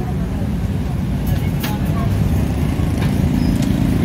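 A steady low rumble of background noise, with a few faint clicks.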